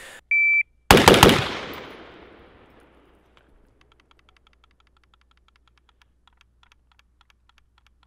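A shot timer's start beep, then a fast string of about four shots from a Tommy Built T36C, a 5.56 mm civilian G36C clone, echoing out over the next two seconds.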